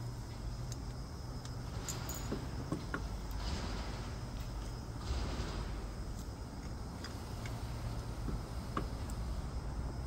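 Steady low background hum with a few faint, sparse clicks of a stretcher's swivel caster being threaded back into its leg by hand.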